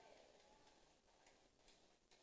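Near silence: faint room tone through the microphone, with a few very faint ticks.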